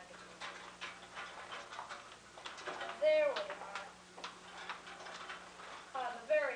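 A child's high-pitched voice speaking, loudest about three seconds in, with scattered light clicks and knocks during the first half.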